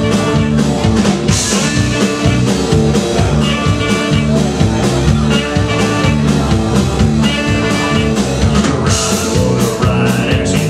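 Live rockabilly band playing: guitar and drum kit at a steady beat, recorded from the audience.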